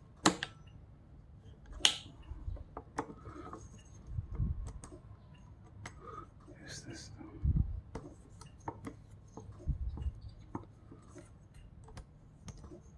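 A red dot sight being fitted and clamped onto an AR-15-style rifle's top rail with a small hex key: metal-on-metal clicks and light taps of the mount and key against the rail, with some rubbing. Two sharp clicks stand out near the start, and a few dull thuds come later.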